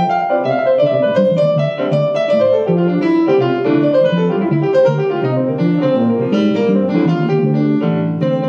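Live instrumental jazz on a Roland FP-7 digital piano with electric bass guitar, the piano playing a steady stream of notes over the bass line.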